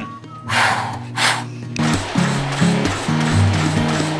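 Two short puffs of breath, as when blowing out birthday candles, about half a second and a second in. Background music with a moving bass line follows.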